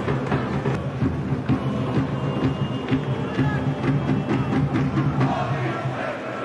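Background music with a drum beat.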